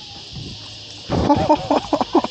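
A man laughing in short, choppy bursts, starting about a second in after a quiet stretch.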